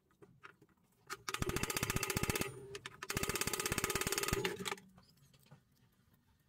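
A ball bearing on a short shaft spun by hand twice, about a second in and again about three seconds in. Each spin is a fast run of clicks with a steady whir, and the clicks slow as the bearing spins down.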